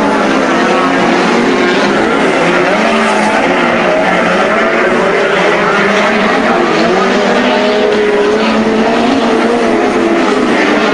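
A pack of speedcars racing, with several engine notes overlapping and rising and falling as the cars lap. The sound is loud and steady throughout.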